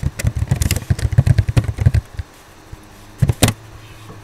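Computer keyboard typing: a quick run of key clicks for about two seconds as a layer name is typed, then two louder clicks a little after three seconds in.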